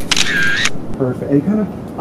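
Contax 645 medium-format film camera taking a frame: a sharp shutter click, then its built-in motor winding the film on for about half a second.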